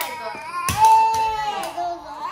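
A toddler crying, with one drawn-out high cry about a second in. A few sharp clicks come through the crying.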